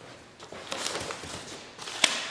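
Brown packing paper rustling, with a few light knocks, as paper-wrapped kit parts are handled and lifted out of a wooden crate. The sound begins about half a second in.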